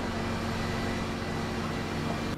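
An engine running steadily: an even, low drone with a few unchanging hum tones.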